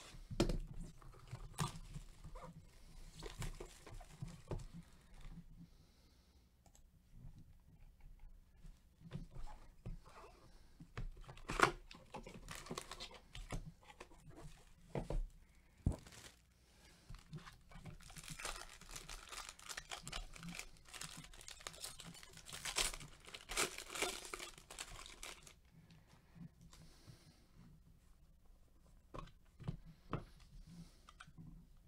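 Shiny foil trading-card pack wrapper being torn open and crinkled by hand, densest in a long stretch of crinkling about two-thirds of the way through. Scattered sharp taps and clicks come from cardboard box and card handling.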